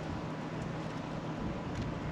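Steady low hum over even outdoor background noise.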